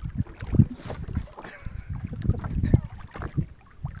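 Gusty wind buffeting the microphone in uneven low rumbles, with scattered short knocks and splashes.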